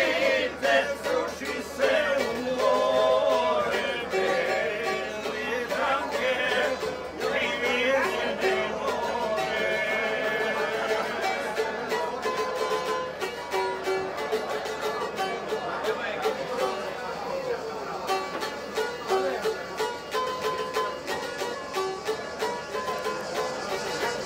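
A small tamburica, a Croatian plucked string instrument, playing a lively tune in rapid plucked notes, with people's voices over it.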